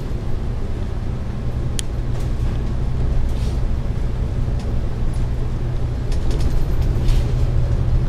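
Interior sound of a KMB double-decker bus on the move: a steady low drone from the diesel engine and drivetrain, with a few sharp rattles and clicks from the body and fittings, growing a little louder in the second half.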